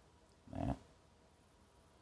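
A brief, quiet mumbled word from a man about half a second in; otherwise near silence.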